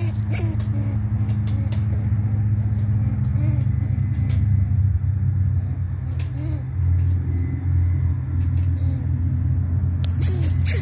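A steady, loud low mechanical hum, like an engine running, with scattered short clicks over it.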